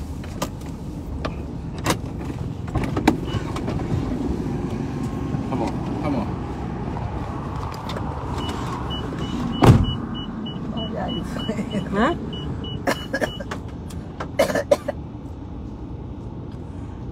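Car cabin noise while driving: a steady low engine and road rumble with scattered knocks, one louder thump a little before halfway. Midway a high beep repeats about three or four times a second for a few seconds, then stops.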